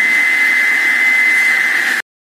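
Block cutter's 24-inch diamond blade, driven by a 2 HP three-phase electric motor, spinning without a load, a loud steady high-pitched whine.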